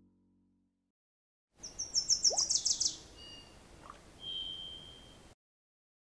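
A bird calling: a fast run of about ten high chirps falling in pitch, then a few short notes and one held high whistle that cuts off abruptly.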